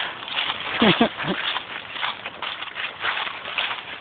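Footsteps crunching and scuffing through dry leaves, with phone handling noise, while climbing down a bank. A brief vocal sound with a sliding pitch about a second in.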